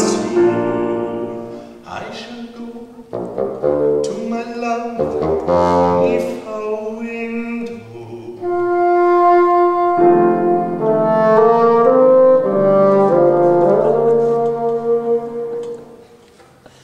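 Bassoon playing an instrumental passage with piano accompaniment: a run of short notes, then longer held notes, stopping shortly before the end.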